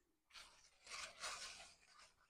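Faint rustling of large squash leaves and stems as a hand pushes through the plants, in two soft bursts, the second longer.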